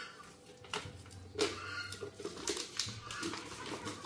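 Plastic powder packet crinkling and rustling as powder is shaken out of it into a plastic jar, with scattered short rustles and a few brief squeaky sounds.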